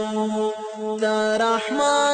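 An unaccompanied voice chanting in long held notes. In the second half the pitch slides to a new note.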